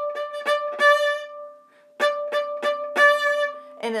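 A viola plays a short bowed phrase of quick hooked bow strokes on steadily held pitches. The phrase is played twice, with a brief pause between.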